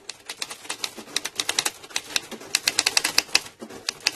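A typewriter being typed on: a quick, uneven run of key strikes.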